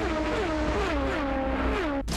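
Indy cars passing one after another at racing speed, each engine note dropping steeply in pitch as it goes by, about four passes in quick succession, with background music underneath. The sound cuts off abruptly at the end.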